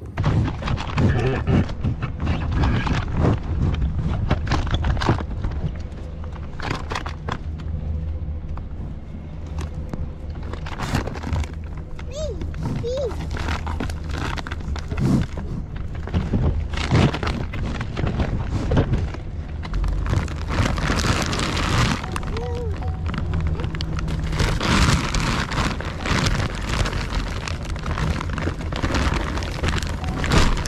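Bison crowding a truck's open window for feed: repeated close knocks and bumps against the truck and microphone over a steady low rumble.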